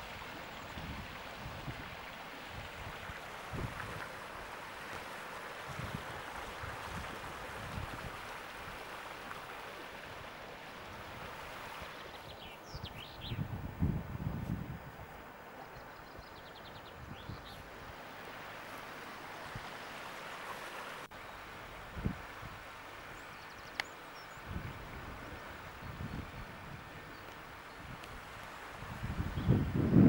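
Outdoor wind noise and handling on a camcorder microphone while walking, with irregular low thumps. A bird chirps briefly a few times around the middle.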